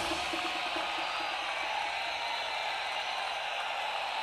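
The echo of an electronic dance track dies away in the first second or so, leaving a steady, even noise with no beat.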